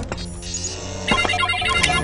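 A sharp hit, then a low droning music bed. About a second in, a fast run of short, high electronic beeps starts, a warbling sci-fi trill like a ringtone.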